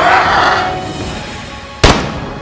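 A single dubbed pistol gunshot near the end, the loudest sound here, over background music. At the start it is preceded by a loud cry from a dinosaur sound effect.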